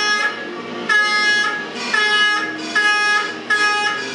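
Small plastic fan horns blown in a run of short, steady-pitched toots, about five in a row with brief gaps between them.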